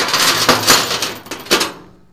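Steel 5/16 grade 70 transport chain rattling and clinking as it is handled, a dense run of link clinks that dies away near the end.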